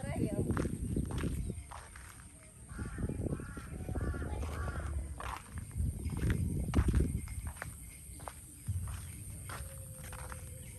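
Footsteps on a muddy dirt track with low rumbling thumps. About three seconds in, an animal calls four times in quick succession.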